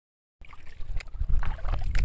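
Dead silence for a moment at an edit cut, then river water sloshing and splashing as someone wades and rummages in it, over a low rumble, with a few sharper splashes about a second in.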